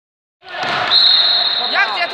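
Sports-hall sound from a youth indoor football game, starting about half a second in: a long, high, steady whistle held for about a second, with short high voices from the court near the end.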